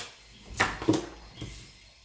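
Tarot cards being handled on a table: two short soft taps about half a second and a second in as the next card is drawn and laid down.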